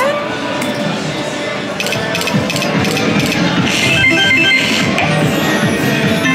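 Slot machine's electronic music and chiming tones as the reels spin, with a brighter burst of chimes about four seconds in.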